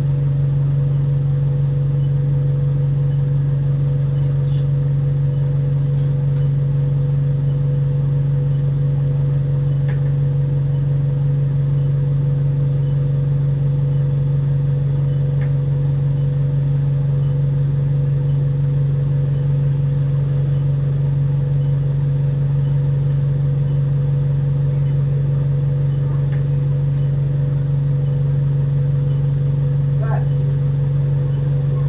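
Single-deck bus's diesel engine idling while the bus stands, heard inside the saloon: a constant low hum with a fainter steady higher tone above it. Faint short high chirps recur every few seconds.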